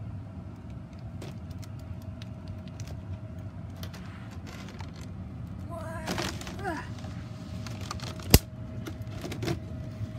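Handling noise of a clear plastic container being moved and bumped over carpet, with scattered small ticks and one sharp plastic click about eight seconds in, the loudest sound. A short wavering voice-like sound comes around six to seven seconds in, over a steady background hum.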